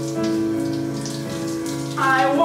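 Shower water spraying steadily onto a tiled shower, under backing music holding sustained chords, with no singing.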